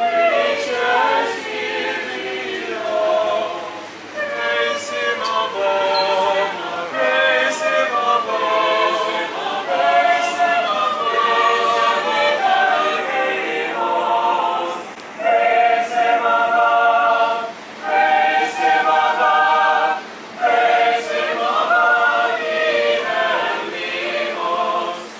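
An unaccompanied choir singing a song in long held phrases, with short breaks between phrases a few times.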